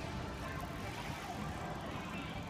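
Steady city street background noise: a low rumble of traffic with faint voices of passers-by.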